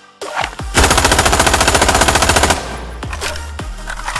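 Sound effect of an automatic rifle firing one rapid full-auto burst lasting about two seconds, starting a little under a second in, over background music.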